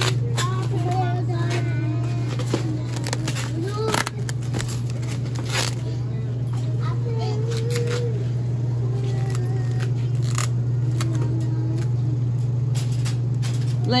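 Plastic-wrapped meat trays being handled, with scattered clicks and crinkles, over a steady low hum and low, indistinct voices.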